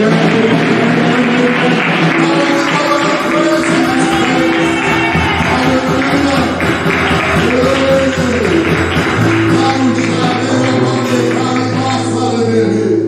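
Church worship band playing: long held keyboard chords with percussion and voices singing over them.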